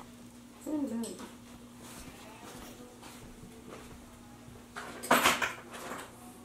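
A domestic cat meows once, a short rising and falling call about a second in, over a steady hum. Near the end comes a short, loud noisy burst.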